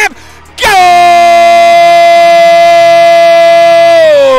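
Air horn blown to celebrate a goal: one long, loud blast that starts suddenly about half a second in and holds a steady pitch.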